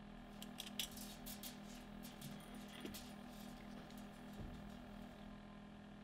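Faint steady low hum with a few light clicks and ticks scattered through it.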